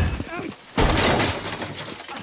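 Film sound effect of a person crashing down through tree branches: a short noisy crash at the start, then a louder, longer crashing from about a second in.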